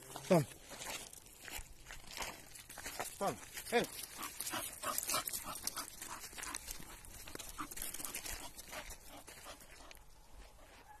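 Footsteps crunching on a gravel and dirt track, a step every fraction of a second, with a leashed dog walking alongside. A short, loud vocal sound sliding down in pitch comes right at the start, and a person says 'okay' and laughs a few seconds in.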